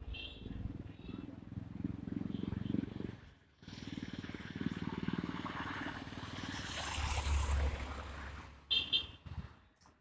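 A small SUV driving past on the road, its engine and tyre noise swelling to a peak about seven to eight seconds in and then fading away. Before it, in the first three seconds, there is more steady road-traffic noise.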